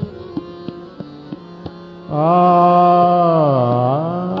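Hindustani classical male vocal in Raag Basant Mukhari. Over a steady tanpura drone with a few sparse tabla strokes, the singer comes in about halfway with a long held note that slides down near the end.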